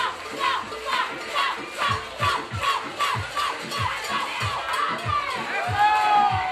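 Background music with a steady electronic bass-drum beat, about two beats a second, and short falling vocal calls repeated on the beat.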